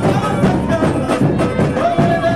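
Samba parade music: a samba school's drum section playing a fast, dense rhythm on drums and percussion, with held melody notes over it.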